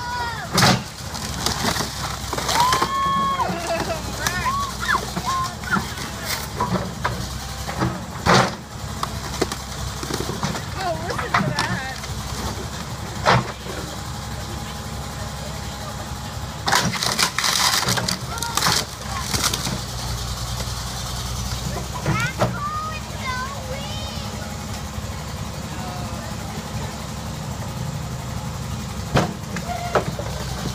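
Backhoe engine running steadily while its bucket repeatedly smashes down on a car body, each blow a sharp crunch of crumpling sheet metal, the heaviest run of blows about two-thirds of the way through. Onlookers' voices call out between the blows.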